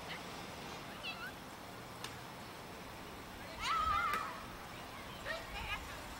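A child's high-pitched shout, wavering in pitch, a little over three and a half seconds in, with a few shorter, fainter young voices calling before and after it.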